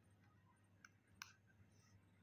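Near silence with two faint, short clicks, one a little under a second in and a slightly louder one just after.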